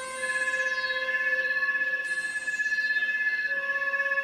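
Electronic synthesizer score: a chord of long held high tones, the uppest one wavering slightly in pitch, giving an eerie, siren-like drone.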